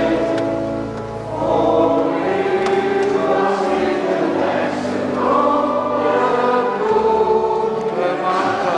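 Choir singing slow, held notes in a church, over low sustained bass notes, with the room's echo.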